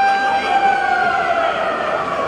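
Ice hockey arena's siren horn, several tones together that wind down in pitch: the signal that time has run out on the clock.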